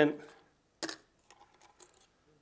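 Ice cubes being put into a funnel: one sharp knock about a second in, then a few faint small clicks.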